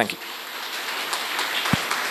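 Audience applauding: a steady, dense patter of many hands clapping that swells slightly.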